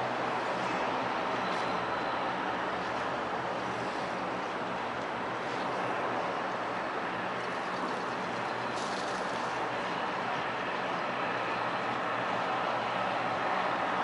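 Steady harbourside background noise with a low, even engine hum, from boats and distant traffic, running unbroken throughout.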